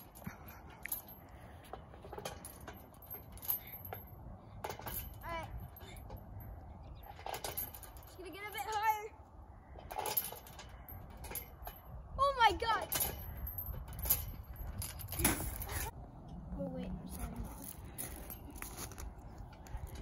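Playground swing going back and forth, its metal chains jingling and clinking in short irregular bursts, over a steady low rumble.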